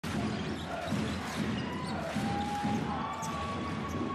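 A basketball bouncing on a hardwood court, with repeated dribble thuds over the steady noise of an arena crowd.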